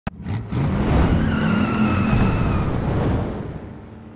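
Car engine revving with tyres squealing, a burnout-style intro sound effect: a sharp click at the start, loud for about three seconds, then fading away.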